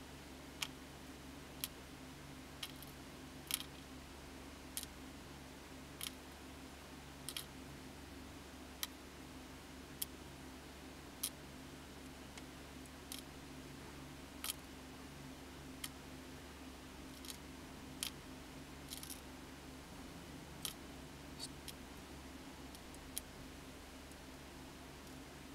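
Small pieces of gold scrap and wire cuttings set down one at a time with tweezers on a digital pocket scale's platform, each landing with a light click, roughly one a second. A faint steady hum sits under the clicks.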